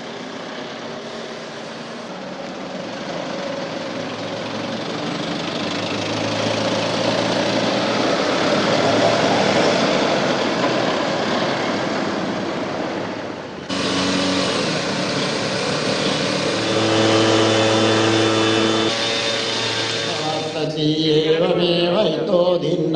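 Ambulance van's engine running and its tyre noise as it drives along a street, growing louder over the first several seconds. The sound breaks off abruptly about 14 seconds in and carries on with a steady low engine hum.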